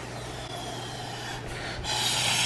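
A child blowing steadily through a plastic drinking straw into fluffy slime, a soft airy hiss of breath, as a slime bubble inflates around the straw's tip.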